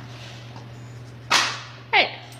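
A dog working at a wooden treat puzzle: one sudden, sharp, loud noise about a second and a half in that dies away quickly, then a short falling vocal sound right at the end.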